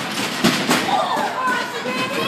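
A heavy thud on the wrestling ring about half a second in, among a few lighter knocks, with spectators' voices shouting over it.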